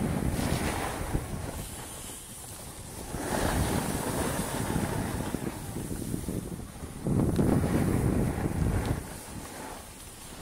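Wind buffeting the microphone during a downhill ski run, mixed with the hiss of skis sliding on snow. It comes in surges and is loudest about seven to nine seconds in.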